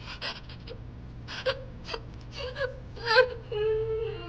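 A young woman crying: a run of short, sharp sniffing and gasping breaths, then a long sob held on one note near the end.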